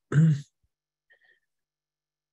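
A person clears their throat once, a short rasp in the first half-second, followed by near silence.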